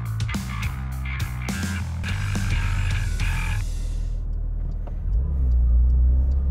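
Background music with a beat fades out about two thirds of the way in, leaving the low rumble of a Porsche 911 GT3 RS's naturally aspirated flat-six, heard from inside the cabin while driving; the rumble grows louder near the end.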